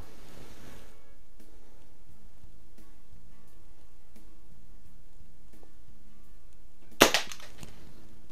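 Daisy Model 177 spring-piston BB pistol firing once: a single sharp snap about seven seconds in, followed a split second later by a softer second click.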